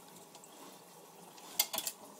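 A dog splashing in toilet-bowl water with its muzzle and paw: faint water sounds, then a quick cluster of splashes and knocks about a second and a half in.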